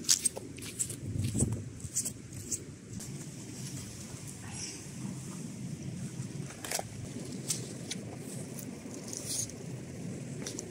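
A hiker's footsteps and the rustle of her clothing and backpack, with scattered light clicks over a steady low rush.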